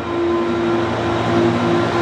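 Vacuum cleaner running steadily, a constant hum with a steady whine, sucking up the last grit left on a concrete floor from an acid-etch pressure wash.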